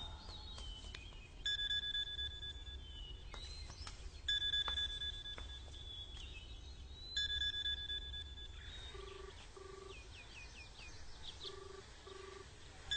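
A telephone ringing three times, each ring about a second and a half long and about three seconds apart, followed near the end by short beeps in pairs.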